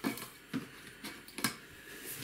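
A bundle of grey nylon monofilament gill net being grabbed and shifted by hand: soft rustling of the line, with three sharp clicks, the first right at the start, then one about half a second in and one near a second and a half.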